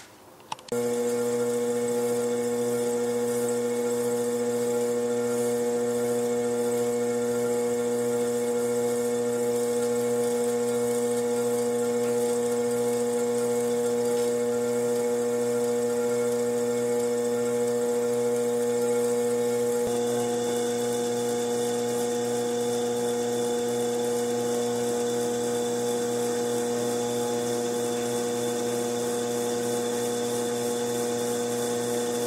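Electric potter's wheel motor running with a steady hum, its tone shifting slightly about two-thirds of the way through as the wheel speed changes.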